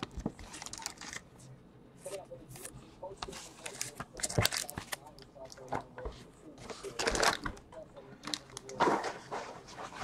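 Trading cards being handled on a tabletop: quiet, scattered rustles, slides and light taps as cards are set down and moved.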